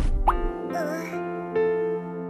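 Cartoon background music settling into steady held chords, opened by a quick rising 'bloop' sound effect and a short wavering cartoon vocal sound about a second in.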